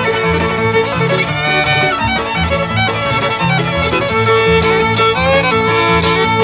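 Bluegrass fiddle taking an instrumental break, a quick sliding melody over a string-band backing with a stepping bass line.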